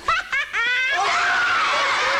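Short high-pitched laughs, then from about a second in a studio audience bursting into sustained laughter.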